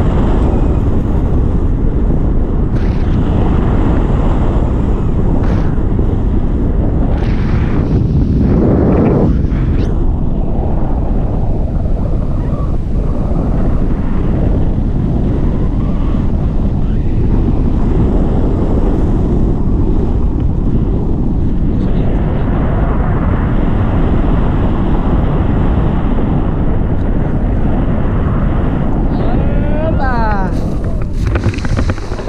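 Wind from a tandem paraglider's flight buffeting the camera microphone, a steady loud rushing that swells briefly about nine seconds in.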